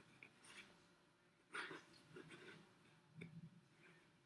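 Near silence with a few faint, short rustles; the loudest comes about a second and a half in.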